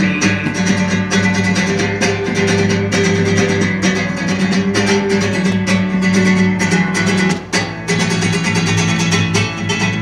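Acoustic guitar strummed steadily in an instrumental break between sung verses of a live folk song.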